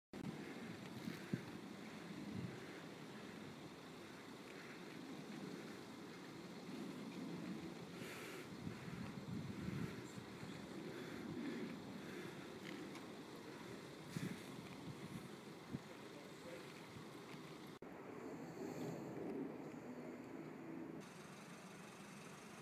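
Wind gusting over the microphone outdoors: a rumbling, rising and falling noise with a few faint knocks.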